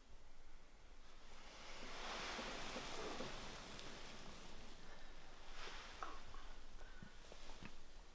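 Fabric rustling as a person shifts and sits up on a blanket-covered sofa, a spell of soft swishing in the first half, followed by a few light taps and clicks.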